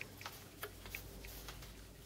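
Faint ticking, a few light ticks roughly a second apart, over a low steady hum.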